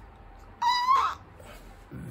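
A single short, high-pitched animal-like call about half a second in, lasting about half a second, its pitch holding and then dropping at the end, over low room tone.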